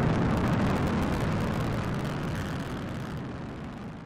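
Outro sound effect: a deep, noisy rumble with no tune, fading out steadily.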